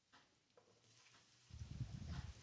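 Near silence, then about one and a half seconds in, soft low knocking and scraping as a wooden spatula stirs chopped tomatoes and chillies into shallots and garlic in a non-stick frying pan.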